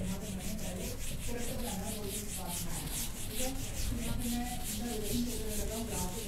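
A whiteboard duster wiping marker off a whiteboard in quick back-and-forth rubbing strokes, several a second.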